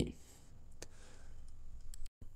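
Low room tone with a faint hiss, broken by two brief faint clicks: one a little under a second in, one near the end.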